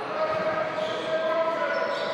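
A basketball being dribbled on an indoor court during play, under steady held tones in the hall.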